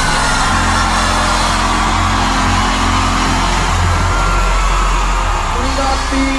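Live band holding a sustained chord over a steady bass while a concert crowd cheers and screams.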